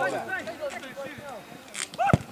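Several voices calling out during a football match, loudest at the start and fading a little toward the end.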